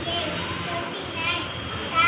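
Children's voices chattering and calling out in the background, in short bursts of high-pitched speech.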